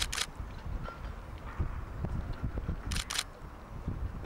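Digital SLR camera shutter firing twice, near the start and about three seconds in, each release a quick double click of mirror and shutter.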